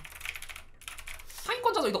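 Typing on a computer keyboard: a quick run of key clicks, giving way to speech near the end.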